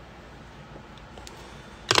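Quiet room tone with a few faint clicks, then near the end a short cluster of loud clicks and rustles from the phone being handled close to its microphone.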